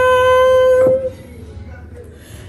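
A woman's voice holding the drawn-out last note of a sung "ta-da!" on one steady pitch, breaking off about a second in with a short click, followed by quiet room sound.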